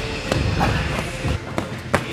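Boxing gloves and strikes landing during partner drills in a gym: a run of dull thumps and slaps with shuffling feet on mats. The sharpest knock comes near the end.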